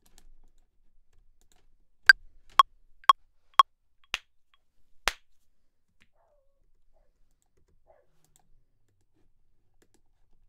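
Four evenly spaced metronome clicks half a second apart, the first higher-pitched than the other three, like a DAW metronome count-in with an accented downbeat. About half a second after the last tick come two sharp, short clicks roughly a second apart.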